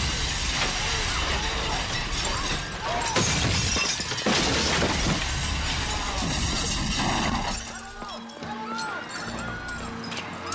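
A car crashing through a store's plate-glass front: glass shattering and debris crashing and clattering down for about seven seconds, then dying away, over dramatic film music.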